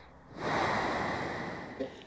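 One long audible breath out. It starts suddenly and fades away over about a second and a half.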